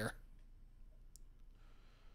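Quiet room tone with one brief, sharp click a little past the middle, followed by a fainter tick.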